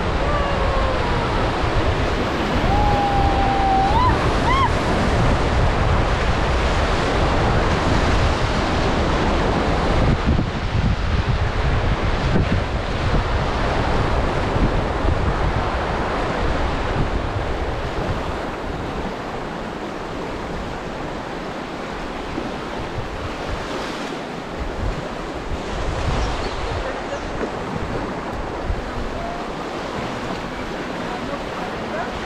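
River rapids rushing around an inflatable raft, with wind buffeting the microphone; the water noise eases in the second half.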